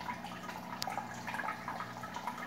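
Hang-on-back aquarium filter running, its outflow trickling and dripping into the tank water, with a steady low hum. A small click about halfway through.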